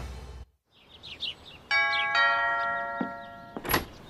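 A two-note doorbell chime, ding-dong, its tones ringing on for about two seconds, after a few faint bird chirps; a short sharp thump comes near the end.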